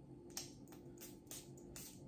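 A few faint clicks and taps from handling a small perfume bottle, in an otherwise quiet room.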